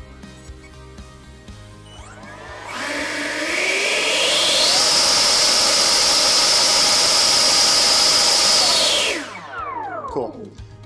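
A Schubeler electric ducted fan in an RC jet spools up from about two seconds in with a rising whine, climbing in steps. It holds a loud, steady high-pitched whine at full power for about four seconds, then is throttled off near the end and winds down in falling pitch. It is a run-up of a single fan for a current-draw check, which reads 57 amps.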